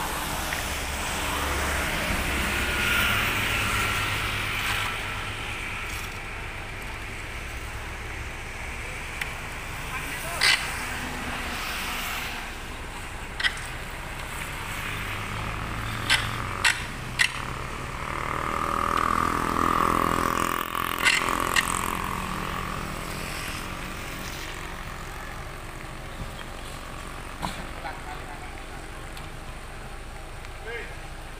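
Outdoor street noise of passing road traffic, including a motorcycle, with a vehicle swelling past about two-thirds of the way through. Indistinct voices carry underneath, and several sharp knocks come in the middle stretch as wreckage is handled.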